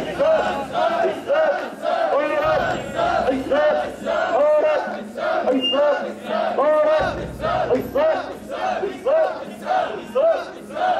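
A large group of mikoshi bearers chanting in unison as they carry the portable shrine, a short rhythmic call repeated about twice a second.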